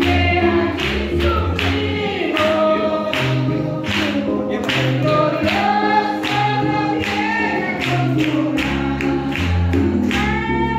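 Gospel worship singing by a group of voices with band accompaniment: held bass notes under the voices and a steady beat.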